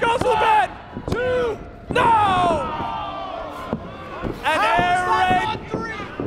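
A wrestling referee's hand slaps the ring mat about a second apart during a pin count, a near-fall that ends in a kickout, followed by loud drawn-out shouting.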